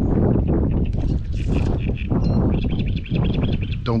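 Strong wind buffeting the microphone over choppy water, with short high bird chirps through the middle.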